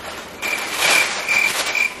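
Paper bag rustling and crinkling as it is shaken open to fill it with air, starting about half a second in. A thin high tone sounds in short pulses over the rustling.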